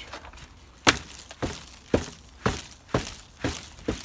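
Gloved hands patting and tamping loose potting soil down around a young tree in a plastic nursery pot: seven sharp pats, evenly spaced about two a second, starting about a second in.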